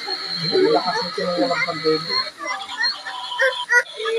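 People talking, with a steady high-pitched whine under the voices that cuts off about halfway through, then a couple of sharp clicks near the end.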